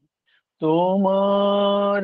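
A man singing a Bengali devotional song to Sarada Devi. After a short breath pause, about half a second in he starts one long, steady held note.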